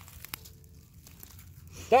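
Dry leaf litter and twigs on the forest floor crackling faintly, with a few small snaps, as someone moves through them; a man's voice starts near the end.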